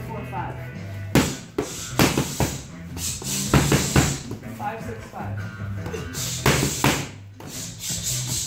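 Boxing gloves smacking into punch mitts in quick combinations, sharp slaps in pairs and threes, about eight in all. Music with a steady bass plays underneath.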